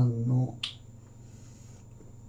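A man's voice speaks briefly, then a single short, sharp snap comes about two-thirds of a second in.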